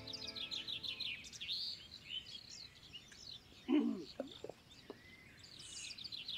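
Small birds chirping outdoors: a quick run of high, repeated chirps in the first two seconds, then scattered calls. A brief low voice-like sound, the loudest moment, comes about two-thirds of the way in.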